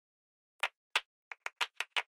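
A series of short, sharp clicks, about nine of them and unevenly spaced, over dead silence.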